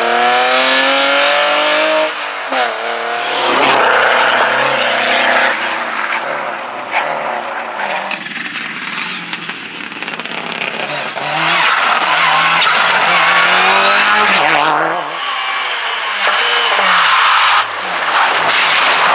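Rally car engines at full throttle: a BMW E30 accelerates away with rising revs and a gear change about two seconds in, then fades. A Subaru Impreza STi rally car, turbocharged flat-four, then comes up and passes close at full throttle, and near the end another car's engine drops in pitch as it slows.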